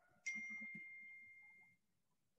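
A single electronic notification chime: one clear ding that starts suddenly and fades away over about a second and a half.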